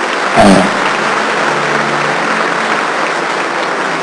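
Large congregation applauding steadily, with a brief shout about half a second in.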